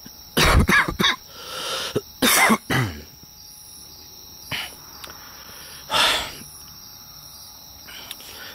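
A man coughing in short bursts: a quick run of coughs in the first three seconds, then two more single coughs spaced out later. A steady high-pitched background hiss runs underneath.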